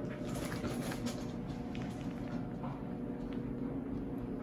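Faint clicks and scrapes of a metal dip-pen nib against a small glass ink bottle as it is dipped, mostly in the first second, over a steady low room hum.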